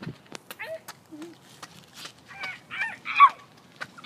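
A child imitating a dog, giving three short barks one after another in the second half, the last one loudest. There are faint scattered taps before the barks.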